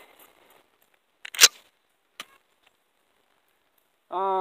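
Pump-action 12-gauge shotgun being handled: a light click, then a loud sharp clack about a second and a half in, and another short click a little under a second later, the sound of the action being worked after a missed shot.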